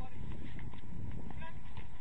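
Players' short shouts and calls on the pitch, faint in this stretch, over a steady low rumble with irregular thumps.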